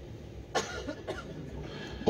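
Two coughs over a low steady background: a sharp one about half a second in and a smaller one a little after a second.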